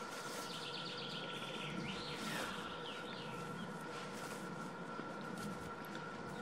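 Songbirds calling: a rapid high trill from about half a second in, lasting just over a second, then a short gliding call. Underneath is a faint steady hiss with a thin constant tone.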